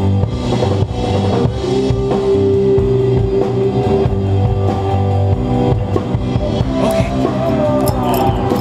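Rock music with drum kit and guitar, played continuously; a long note is held from about two to four seconds in.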